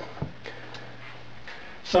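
A few faint, short clicks and taps of small wooden holder blocks handled against the edge of a tablet, over a low steady hum. A man's voice starts near the end.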